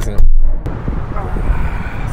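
A loud muffled bump on the microphone about a quarter of a second in, then steady outdoor traffic and wind noise.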